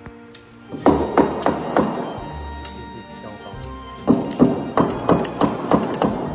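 A mallet knocking wooden segments of a segmented wooden cylinder into place: a run of four quick blows about a second in, then six more from about four seconds in, roughly three a second, over background music.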